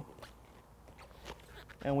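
A quiet pause holding a few faint, light clicks over a low steady background hum.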